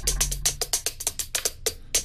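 Korg Wave Drum Mini electronic drum pad struck rapidly with chopsticks, giving a fast, even run of drum and cymbal-like hits, about ten a second, with a low booming tone under the first hits.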